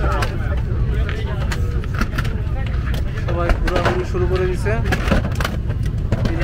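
Airliner cabin at the end of a flight: a steady low cabin rumble under the chatter of many passengers, with scattered clicks and knocks as people stand up and handle the overhead bins.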